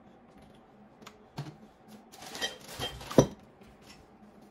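Small hard objects being handled: scattered light clicks, then a short run of clattering ending in one sharp knock about three seconds in.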